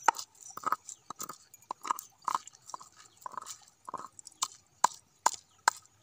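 A hand-held stone repeatedly knocking and crushing on a flat rock surface, grinding scattered grain-like scraps. The short, sharp knocks come in an uneven rhythm of about two to three a second.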